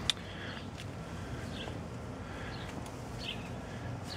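Quiet outdoor garden ambience with a steady low background, a sharp click just after the start, and a few brief, faint high chirps like distant birds.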